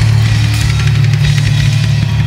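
Live rock band playing loud, with rapid drum-kit hits and cymbals over a held low note.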